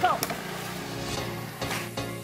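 A plastic bucket on a rope splashing once into the river, heard as a single sharp hit just after the start. Steady background music plays under it.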